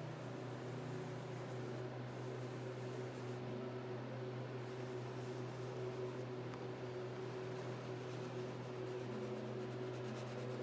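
Steady low hum of room noise, with faint soft rubbing of pastel on paper as colours are blended.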